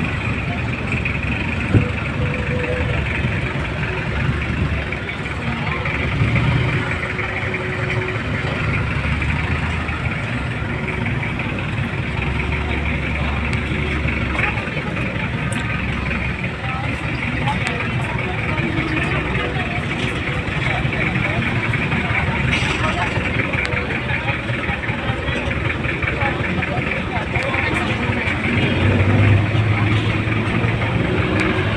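Street traffic around jeepneys: vehicle engines running and idling, with people talking in the background and a sharp tap about two seconds in.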